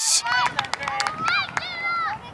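Young soccer players shouting and calling to each other across the pitch, several high-pitched calls overlapping with one call held near the end. A few light knocks are heard among them.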